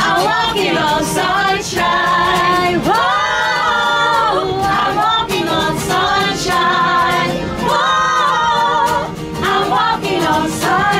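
Two women singing a song together live, in close harmony, holding one long note about three seconds in.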